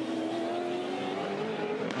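Ford Falcon FG X Supercar's V8 engine running hard at high revs. It holds one steady note that sags slightly in pitch over the two seconds.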